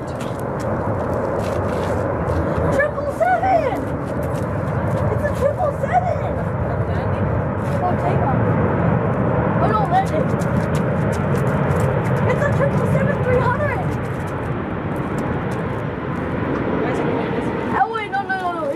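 Delta Airbus A330-900neo's Rolls-Royce Trent 7000 jet engines during the landing rollout: a steady roar that swells in the middle and eases toward the end as the airliner slows on the runway.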